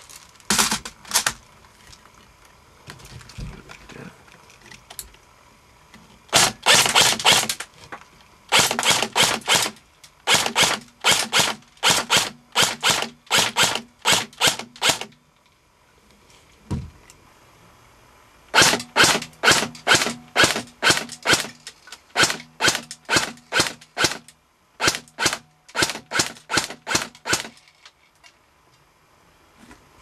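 JG SIG 550 airsoft electric rifle, downgraded to under one joule, firing runs of single shots in quick succession, each a sharp crack. The shots come about two or three a second, in several strings with short pauses between them.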